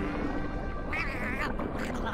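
A cartoon shark character crying in pain, two short wavering high-pitched cries, the longer one about a second in.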